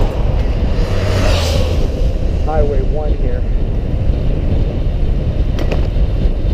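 Wind rushing over the microphone of a bicycle-mounted camera while riding, a steady low rumble, with a brief swell of brighter hiss about a second in and a few muttered words near the middle.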